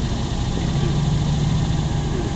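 Jeep rock crawler's engine running at low revs under load as it crawls up a rocky climb, a steady low hum that rises slightly about half a second in.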